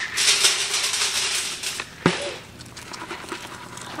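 Dry feed poured from a plastic bucket into a wire crate, rattling for about two seconds, then a single sharp knock.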